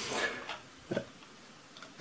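A pause with very quiet room tone: a faint noise trails off in the first half-second, and one brief, soft sound comes about a second in.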